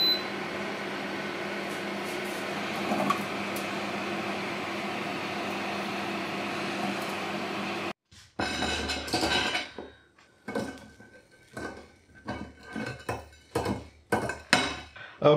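A short beep from the control panel, then the Hauswirt K5 Pro air fryer oven running: a steady fan whir with a low hum for about eight seconds. After a sudden cut, the metal mesh rotisserie basket clinks and knocks against a plate as the cooked chips and fish fingers are tipped out.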